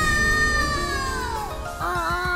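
An animated character's high, drawn-out squeal that sags in pitch after about a second and a half, followed near the end by a shorter, lower cry, over background music.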